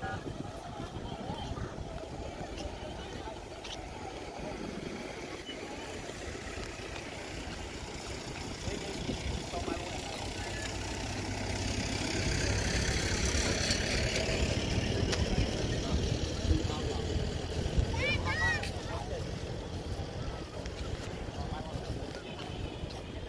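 Outdoor ambience of people's voices in the background with traffic. A vehicle goes by, loudest about twelve to sixteen seconds in, and a brief high chirping sound comes about eighteen seconds in.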